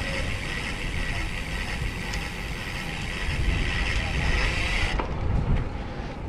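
Wind rumble and road noise on the microphone of an action camera riding on a road bike in motion. A steady high hiss over it cuts off abruptly about five seconds in.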